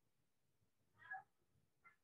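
Two faint, short pitched calls: one about a second in and a briefer one near the end, over near silence.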